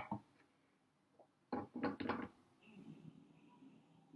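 Three light knocks from glass gong dao bei pitchers being handled on a tea tray, about a second and a half in, followed by faint handling rustle.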